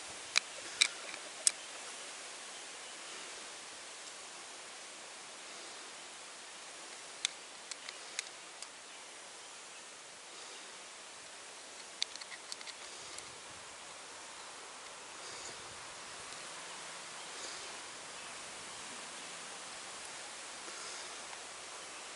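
Sharp, sparse clicks of a metal hose-end clamp and screwdriver being handled: three in the first second and a half, then a few fainter ones around seven to eight seconds and again around twelve to thirteen seconds, over a steady background hiss.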